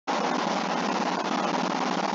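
A steady, even hiss of noise with no tone or rhythm, cutting in abruptly just after the start.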